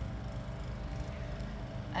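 A steady low rumble of outdoor background noise with no distinct event in it.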